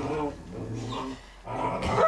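A puppy growling low in two short stretches while it mouths and tugs a sock toy.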